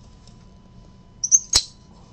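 Cardboard trading-card box being opened by hand: a brief high squeak of card rubbing on card, then one sharp snap about one and a half seconds in as the contents are pulled out.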